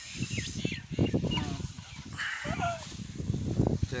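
Birds chirping and calling in short, scattered calls over a low, uneven rumble.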